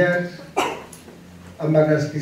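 Only speech: a man's voice in short phrases, with a brief breathy burst about half a second in and a pause before he speaks again near the end.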